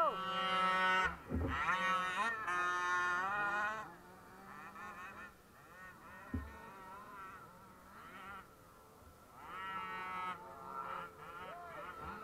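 Radio-controlled model cars' motors, a high-pitched buzz revving up and down as the cars drive. It is strongest in the first four seconds, fades, and comes back around ten seconds in, with a short low thump about six seconds in.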